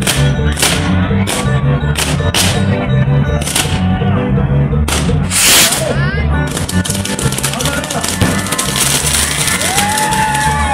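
Loud music with a steady bass beat, over which about seven sharp firework reports go off in the first six seconds, the longest about five and a half seconds in. From about six and a half seconds a continuous fizzing crackle of sparks joins in as a section of the fireworks castle (castillo) burns.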